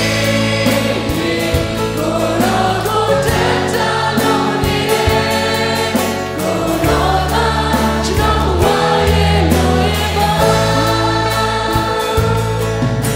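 Live worship band performing a gospel praise song in Burmese: a male lead singer with backing singers, over acoustic and electric guitars and a drum kit keeping a steady beat.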